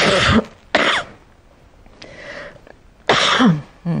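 A woman coughing in several short bursts. Two loud coughs come at the start, a softer one about two seconds in, and another loud one near the end, followed by a brief "mm".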